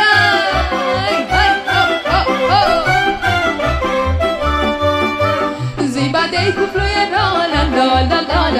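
Romanian folk dance music: a lively instrumental melody with quick ornamented runs over a steady bass beat.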